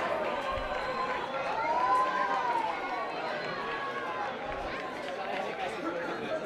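Voices calling and shouting across an open-air football pitch during play, several overlapping, with one long drawn-out call about two seconds in.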